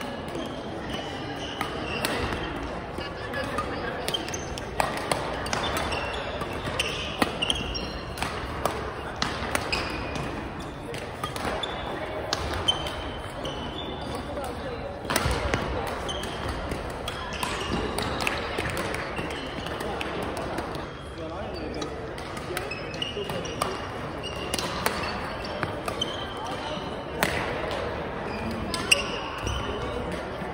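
Badminton rally: sharp cracks of rackets striking the shuttlecock, short high squeaks of shoes on the gym floor, and steady background chatter from people around the courts.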